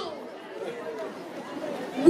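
Faint background chatter of several voices in a large hall, during a pause in a close speaker's talk, which stops at the very start and resumes at the very end.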